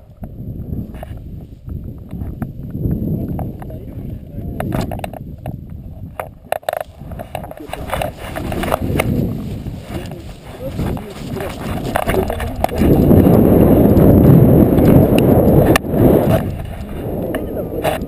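Wind buffeting the camera microphone during a tandem paraglider's running launch, with irregular knocks and clicks from footfalls and the harness and straps. The wind noise is loudest from about two-thirds of the way in and eases near the end as the glider is airborne.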